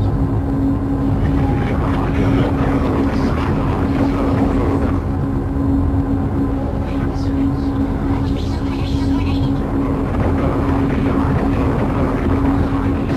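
Experimental noise music from a cassette release: a dense, steady rumbling drone with a held low hum under it. Brief higher hissy streaks come and go in the middle of the stretch.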